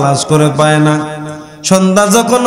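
A man chanting a sermon in a drawn-out, sung style, amplified through a microphone. A long held note fades out about a second and a half in, and a new phrase begins just after.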